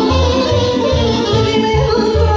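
Live Romanian folk party music: a woman singing into a microphone over a band with accordion and a steady bass beat.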